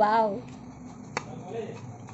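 A kitchen knife clicking once, sharply, against a stainless steel plate while slicing mango, about a second in. A short wordless voice sound at the start is the loudest thing.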